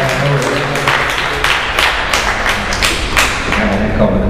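Hands clapping in a steady rhythm, about three sharp claps a second, over a haze of audience applause.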